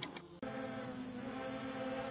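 Brushless motors and propellers of a hand-built hexacopter hovering in GPS position hold: a steady hum of several fixed tones that starts suddenly about half a second in.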